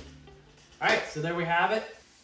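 Background music fading out, then a man speaking briefly about a second in.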